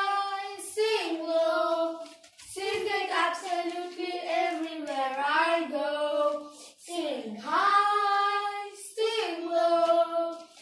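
Two children singing a Christian praise song together without accompaniment, in held, gliding phrases with short breaks for breath between them.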